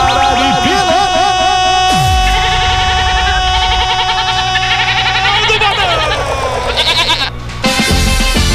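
A long drawn-out goal shout held on one note for about five seconds, then sliding down in pitch and breaking off, over loud background music.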